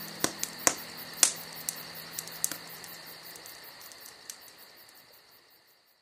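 Campfire crackling with irregular sharp pops over a steady high chirring of crickets, while the last low note of the song dies away. Everything fades out to silence at the very end.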